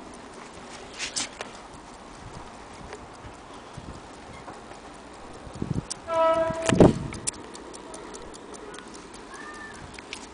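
Elliott bracket clock's eight-day mechanical movement ticking, the quick regular ticks clearest in the last few seconds. About two-thirds of the way through, a brief high tone and a loud knock of the clock case being handled.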